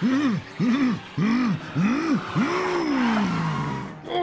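A cartoon character's voice crying out in about five effortful rising-and-falling calls, the last one drawn out and sliding down, as the tiger charges up to the finish at full speed.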